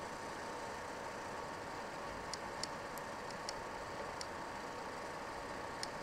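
Steady faint hiss with a few light, scattered ticks from about two seconds in: a stylus tapping on a drawing tablet while handwriting.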